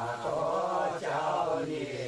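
A group of Miao women singing a folk song together in unison, with long held notes and a short break between phrases about a second in.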